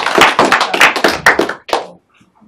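Small audience clapping, a quick run of individual hand claps that dies away near the end.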